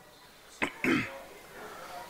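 A man clearing his throat into a microphone: a short catch about half a second in, then a rougher rasp.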